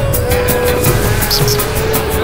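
Dramatic television background score: one long held note over a fast, rattling percussion beat.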